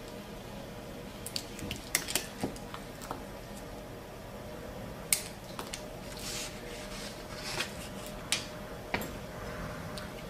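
Scattered light clicks and taps of a steel orthodontic instrument and fingers against brackets and a plastic typodont while elastic modules are placed to tie the archwire to the back teeth. The clicks come irregularly, thickest in the first few seconds and again in the second half.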